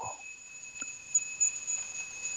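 Quiet background with a faint, steady, high-pitched electronic whine made of two constant tones, and a single faint click about a second in.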